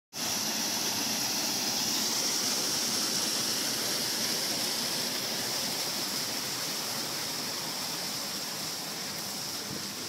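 Small creek waterfall splashing over rocks into a pool: a steady rush of water that grows gradually a little fainter toward the end.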